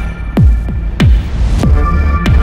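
Electronic music: a deep kick drum that drops sharply in pitch on each beat, a little more than one and a half beats a second, over a held synth chord.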